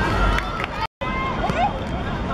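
Children's high voices calling and shouting during a football game, over outdoor background noise. The sound drops out completely for a moment just before a second in, at an edit cut.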